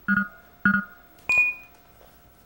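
Quiz-show sound effect: two short electronic beeps about half a second apart, then a bright chime that rings on and fades a little over a second in. It accompanies the teams' true-or-false answers being revealed on their podium screens.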